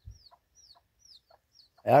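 Domestic chicks peeping: a run of faint, short, high peeps, each falling in pitch, about two to three a second, with a few soft low clucks from the mother hen.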